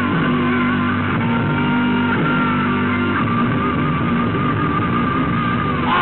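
Live rock band playing an instrumental passage: electric guitar holding long, wavering notes over a steady bass line.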